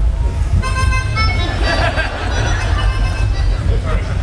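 A melody of held notes played on a small handheld wind instrument into a microphone, changing pitch a few times, over a steady low rumble.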